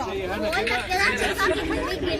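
Chatter of several people talking over one another, no single voice standing out.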